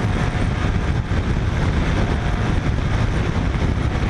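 Kymco AK550 maxi-scooter's parallel-twin engine under way at highway speed, its sound mixed into a steady rush of wind and road noise on the rider's microphone.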